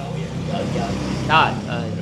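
A steady low engine hum, with a short burst of a voice about one and a half seconds in.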